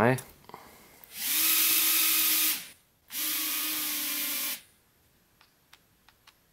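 JJRC H36 micro quadcopter's four tiny motors and ducted propellers whirring up twice, each run lasting about a second and a half, the second a little quieter. The drone is running on a low battery.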